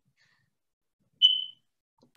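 One short high-pitched beep a little over a second in, with near silence around it.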